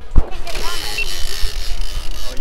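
Wind rumbling on an action camera's microphone over open water, with a sharp loud knock about a quarter second in and a woman laughing.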